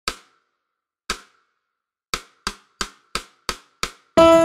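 Sharp percussive hits with dead silence between them: two about a second apart, then a quick run of six at about three a second, like an edited-in intro beat.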